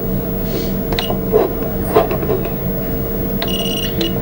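Steady electrical hum with a few faint knocks, then a short high electronic beep about half a second long near the end.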